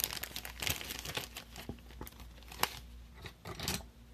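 Crinkling and rustling of packaging handled by hand, dense for the first second or so and then thinning to scattered sharp clicks, the sharpest about two and a half seconds in.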